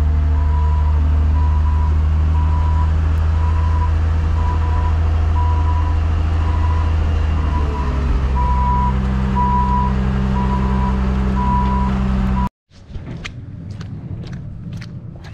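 A vehicle engine running steadily while a reversing alarm beeps about twice a second; the engine note changes about eight seconds in. The sound cuts off abruptly near the end.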